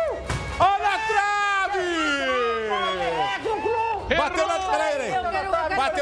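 A football kicked at a goal, with a sharp knock less than a second in as the ball strikes the goalpost, followed by voices exclaiming in a long falling "ohh" over background music.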